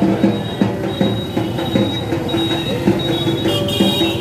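A quick, uneven run of drum beats, each with a short pitched ring, with a steady high ringing tone over them.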